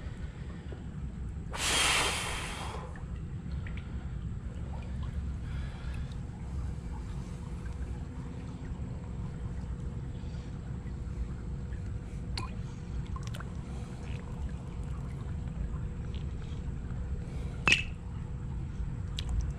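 Hands working in shallow creek water among rocks: a loud rush of water, like a splash or scoop, about two seconds in, then faint trickling and scattered small clicks of stones over a steady low rumble, with a sharper click near the end.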